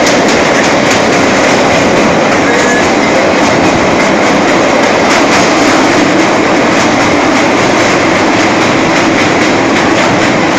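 Train running at speed, heard from inside a carriage through an open window: a loud, steady rumble of wheels on rail with faint regular clicks as it crosses a steel truss bridge.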